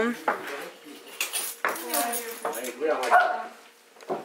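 Dogs barking and whining in short calls, mixed with a few sharp clinks and knocks.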